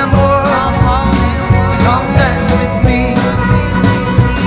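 Indie folk band playing live: strummed acoustic guitars, keyboard and drums keeping a steady beat, with a voice singing a wavering melody over them.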